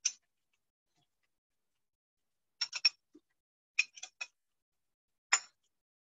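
Metal spoon clicking against a stainless steel saucepan while scooping cooked white rice into a small ramekin: a single click, then a quick run of three, a run of four, and one more click near the end, with dead silence between.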